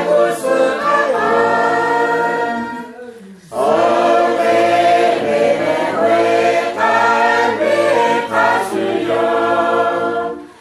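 A choir singing in harmony, several voices together; the phrase breaks off briefly about three seconds in before the singing resumes.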